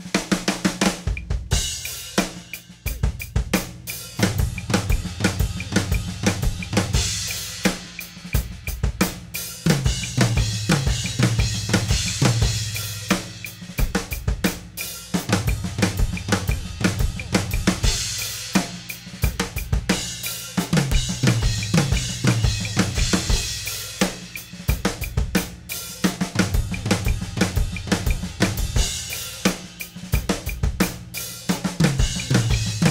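Acoustic drum kit played in continuous flammed fills: one-sided flam accents voiced between the toms and snare, with kick drum and cymbals, repeated in several starting positions.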